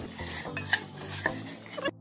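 A hand mixing raw beef chunks in a yogurt-and-spice marinade inside a pot: soft wet mixing noise with a few light clicks against the pot, stopping abruptly near the end.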